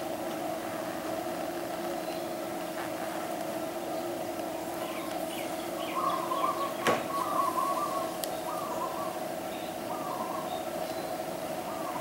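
Birds calling in short runs of chirps from about five to ten seconds in, over a steady low hum, with a single sharp click a little past the middle.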